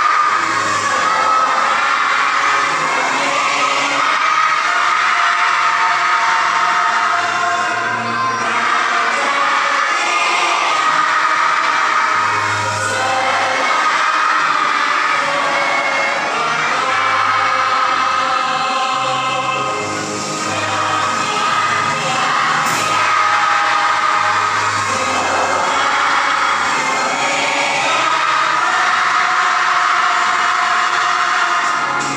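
A song with instrumental accompaniment, sung along by a large group of people together.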